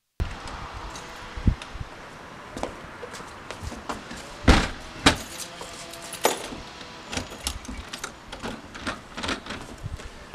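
Front door being handled, shut and locked: a run of clicks and knocks from the handle, lock and keys, with two loud knocks about half a second apart near the middle, over steady outdoor background noise.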